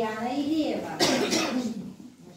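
A person's voice, drawn out and wavering in pitch, then a loud cough about a second in.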